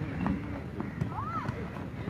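Players and onlookers shouting and calling across an outdoor football pitch during play, with one high rising-and-falling call a little over a second in.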